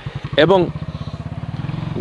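A small engine idling nearby with a steady, rapid, even putter.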